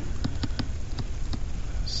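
A pen stylus tapping on a tablet screen while handwriting: several light, irregular taps over a steady low hum.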